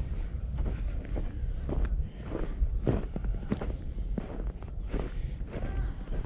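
Footsteps crunching through snow at a steady walking pace, about two steps a second.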